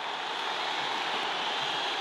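Large stadium crowd cheering a goal, one steady wash of many voices with no break.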